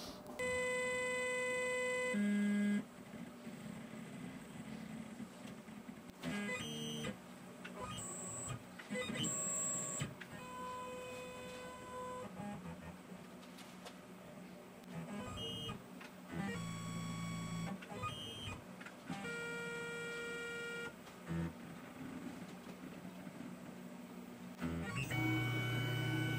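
Tormach PCNC 1100 CNC mill's axis stepper motors whining in a series of short, steady tones at changing pitches, each lasting about one to two seconds, as the machine jogs its axes to touch off the part.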